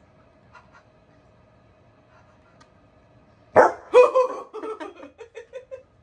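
Bernese mountain dog barking twice, sudden and loud, after a few quiet seconds, then a quick run of shorter, quieter sounds, about five a second.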